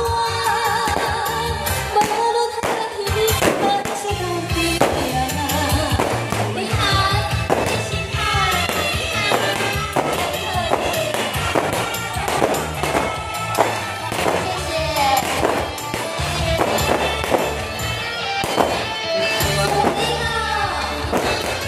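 A woman singing into a handheld microphone over an amplified backing track with a steady beat.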